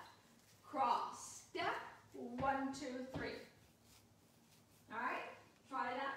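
A woman speaking in short phrases with brief pauses between them.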